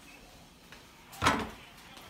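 A ceramic baking dish of macaroni and cheese set down on a kitchen countertop: one short clunk a little over a second in, after a quiet stretch.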